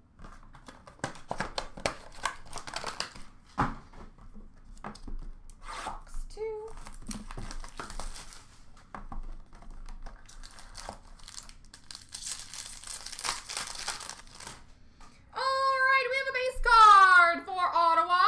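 Trading-card box and wrapper packaging being handled and torn open: many small crinkles and clicks, with a longer tearing rustle about twelve seconds in. Near the end a voice sounds, held and then gliding downward.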